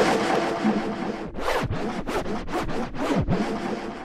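Electronic dance music in a DJ mix, taken over by a noisy record-scratch-like effect: rough strokes of noise sweeping up and down a few times a second, with two deep downward swoops, over a faint continuing beat.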